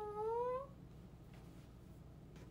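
A young woman's high, drawn-out vocal note that dips and then rises in pitch, ending less than a second in; after it, only faint room tone.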